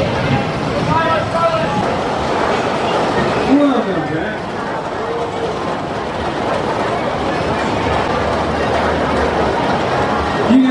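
Wooden roller coaster train running on its track: a continuous rumbling roar, with people's voices heard over it.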